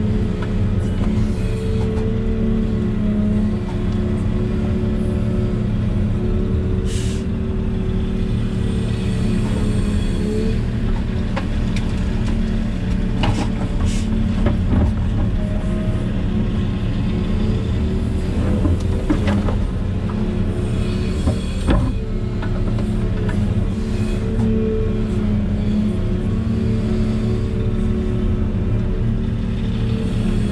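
Volvo EC380E excavator's diesel engine and hydraulics running steadily, heard from inside the cab, with a whine that shifts in pitch as the boom and bucket are worked. A few knocks and clatters come in the middle, from the bucket working the dirt.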